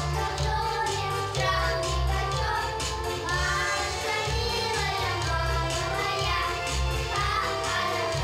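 A small group of young girls singing a song together into microphones, over musical accompaniment with a steady low beat.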